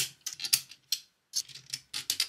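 Small 3D-printed plastic segments being pushed and snapped into the holes of a 3D-printed display panel. It makes a quick run of light plastic clicks, with a brief pause about a second in.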